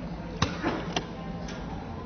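Corded desk telephone handset hung up on its cradle with a sharp clack, followed by two lighter clicks about half a second apart, over a steady low hum.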